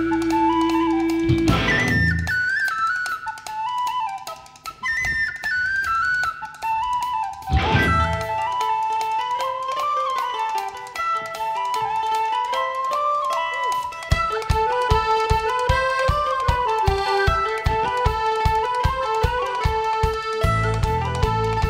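Live Celtic punk band playing an instrumental passage: a tin whistle carries a fast, ornamented melody over strummed acoustic and electric guitars. Two cymbal crashes come in the first half, and a steady kick drum beat joins in the last third.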